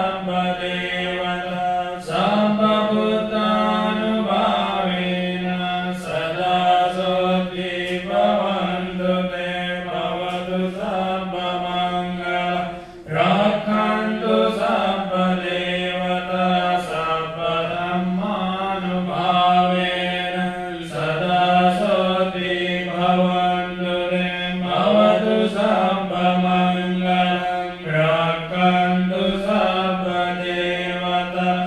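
Buddhist paritta chanting, recited in a steady, nearly level tone. It runs in phrases of a few seconds, with a brief pause for breath about halfway through.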